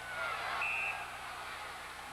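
Arena crowd noise with one short, high referee's whistle blast about half a second in, stopping play for offside.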